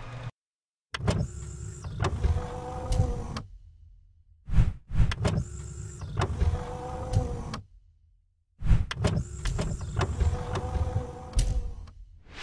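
Whirring sound effect of an animated 3D logo intro, heard three times; each pass lasts about two to three seconds with a brief silence between.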